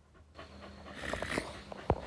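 A dog panting close to the microphone, with a sharp knock near the end.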